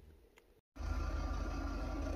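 Near silence, then after an abrupt edit about three-quarters of a second in, a vehicle engine idling: a steady low rumble with a faint, even hum.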